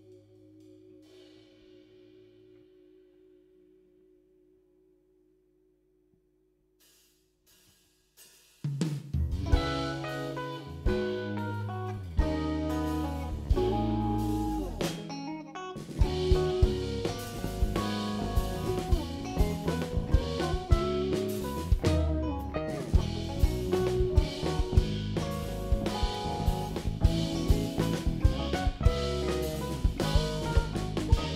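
Live instrumental post-rock/math-rock band of electric guitars, bass guitar and drum kit. Faint sustained notes die away to near silence, then the full band comes in together about nine seconds in and plays on with busy drums, briefly thinning out near the middle.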